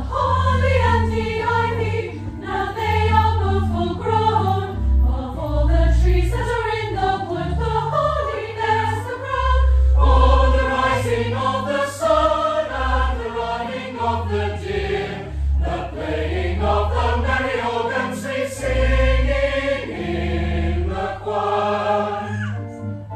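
Choir singing a Christmas carol in a reverberant church, with sustained organ bass notes beneath the voices.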